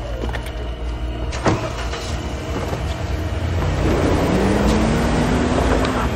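Car engine running and revving up as the car moves off, its pitch rising over the last two seconds, with a sharp click about a second and a half in.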